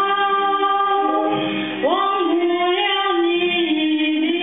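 Female vocal music: a soprano holding long notes over other voices, sliding up into a higher note about two seconds in.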